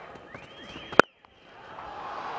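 A cricket bat striking the ball: one sharp crack with a brief ring about a second in, over faint crowd noise.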